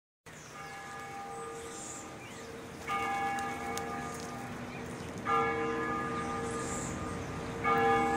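A bell tolling four times, about every two and a half seconds, each stroke ringing on until the next.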